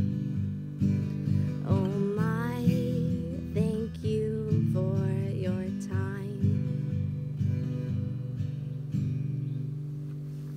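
Acoustic guitar strumming chords about once a second as a song closes, with a woman singing over it until about six seconds in. The guitar then goes on alone and dies away.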